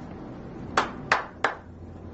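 Three quick, sharp hand claps about a third of a second apart.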